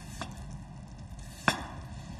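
Kitchen knife slicing through a raw potato and knocking on the cutting board: a faint cut just after the start and one sharp knock about one and a half seconds in.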